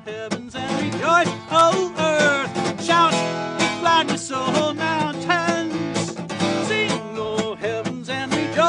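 Instrumental break of a song: guitar playing a quick melodic lead with notes that bend and slide in pitch, over sustained accompaniment.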